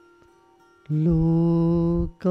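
A voice chanting a mantra. After about a second of quiet with faint steady tones, it sings one long syllable held on a steady pitch, which breaks off right at the end.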